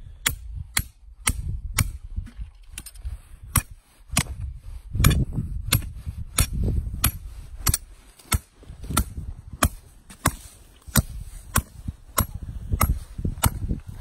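A hammer pounding a steel earth-anchor driver rod, driving a trap's earth anchor into very hard ground. Sharp metal-on-metal strikes come steadily, about two a second, some two dozen blows in all.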